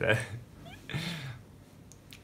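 The end of a spoken word, then about a second in a single short, breathy vocal sound with a low arching pitch.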